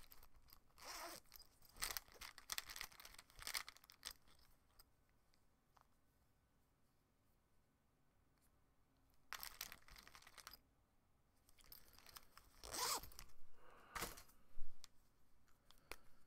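Short, scattered bursts of rustling and scraping from pens and art supplies being handled, with a near-silent stretch in the middle.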